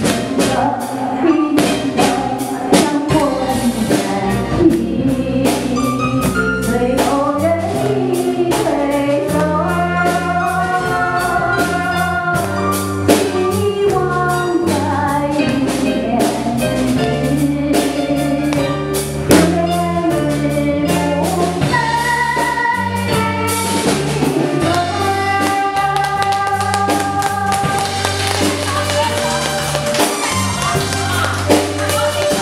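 A woman sings a song into a microphone, backed by a live band of electric bass guitar and drum kit keeping a steady beat.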